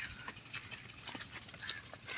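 Footsteps on wet, muddy field ground, a run of irregular soft knocks and crunches.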